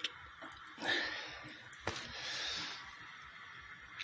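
Faint breathing close to the microphone: two soft breaths, with a single sharp click a little before two seconds in.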